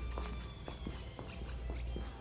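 Footsteps on a hard, polished floor, as a series of irregular short clicks over a low hum.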